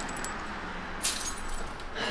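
A bunch of house keys jingling: a small clink, then a louder jangle about a second in.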